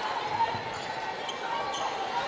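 A basketball being dribbled on a hardwood court, a few bounces with the sharpest about half a second in, over the murmur of the arena crowd.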